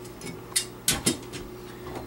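Adjustable pliers gripping and turning a plastic slip nut on a sink drain's wall tube counterclockwise, giving a few sharp clicks and scrapes about half a second to a second in as the jaws bite and shift on the nut.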